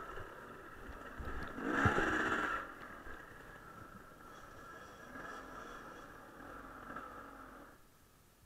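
Enduro dirt bike engine running, revving up briefly about two seconds in, then running at a lower, steady level before the sound cuts off suddenly near the end.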